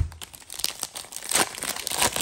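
Foil wrapper of a Panini Contenders Football trading-card pack crinkling and tearing as it is pulled open by hand, a fast, irregular run of sharp crackles.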